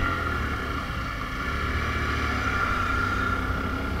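Motorcycle engine running at a steady cruising speed while riding, with wind noise on the camera's microphone.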